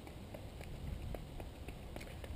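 Footfalls of a runner doing high-knee skipping on a dirt path: a quick, even patter of light foot strikes, over a low steady rumble.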